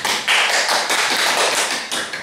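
Small audience applauding, many quick overlapping hand claps.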